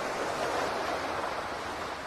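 Ocean surf washing onto a sandy beach: a steady rush of waves.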